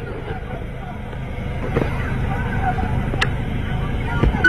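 Steady low rumble of idling vehicle engines and traffic, with several people's voices calling faintly in the background and one sharp knock about three seconds in.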